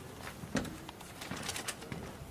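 Quiet room noise with a few scattered soft clicks and knocks, and no speech.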